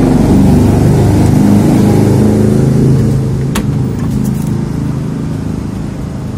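A city bus engine running close by, loud at first and then quieter from about three seconds in, with a couple of sharp clicks around the middle.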